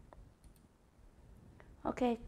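A few faint, scattered clicks from a computer keyboard and mouse in use.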